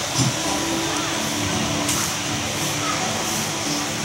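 Soft background instrumental music, sustained low notes changing every second or so, under a steady hiss of room and sound-system noise.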